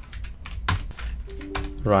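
Computer keyboard typing: a quick, uneven run of keystroke clicks.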